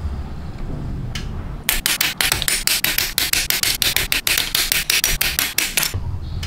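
Hobby nippers snipping clear plastic model-kit parts off their runner: a fast run of sharp clicks, about six or seven a second, starting about two seconds in.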